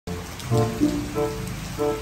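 Steady rain falling, with background music of short pitched notes repeating about every half second.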